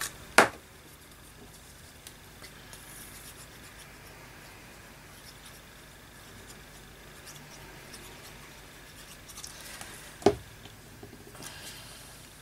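Small craft tools and paper handled on a table: two sharp knocks, one just after the start and one near the end, with faint paper rustling in between.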